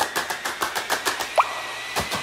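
Electronic sound-design sting: a rapid run of sharp clicks, about ten a second, over a thin steady high tone, with a short rising bloop about one and a half seconds in.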